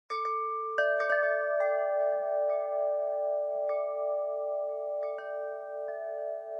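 Wind chimes ringing: about ten irregularly spaced metal strikes, each tone ringing on and overlapping the next.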